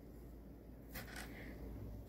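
Quiet room with a couple of faint light taps about a second in: small beads being handled and set on paper strips on a wooden table.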